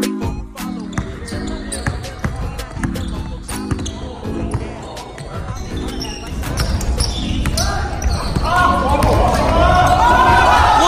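Basketball bouncing on a gym floor in a series of sharp knocks, with the echo of a large hall. From about eight seconds in, several voices shout and whoop, getting louder.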